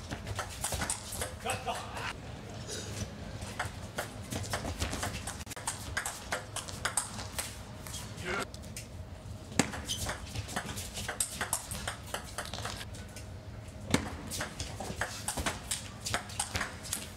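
Sharp clicks of a table tennis ball striking bats and table during rallies, over the murmur and calls of an arena crowd.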